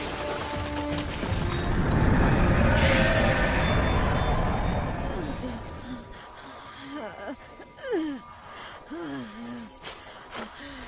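A loud rumbling blast that swells and then dies away over the first half, under dramatic film music, followed by a person groaning and gasping in pain in the second half.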